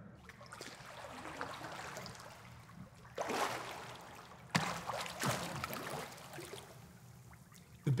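Pool water splashing and sloshing as a snorkeling swimmer sculls face down, pulling both arms back past the hips in a freestyle half-scull drill. The biggest splashes come about three seconds in and again around four and a half seconds.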